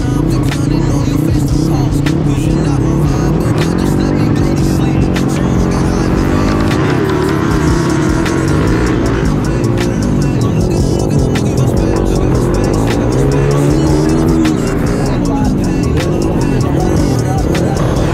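Flat track race motorcycle engine at full race speed, its pitch climbing and falling again and again as it accelerates and backs off through the corners, heard from a camera mounted on the bike. Music plays over it throughout.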